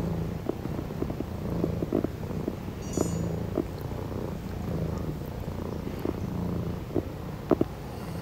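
Maine Coon kitten purring steadily and close up, the purr swelling and easing in even waves about every second and a half with each breath. Small light clicks come over it, with a sharper double click near the end.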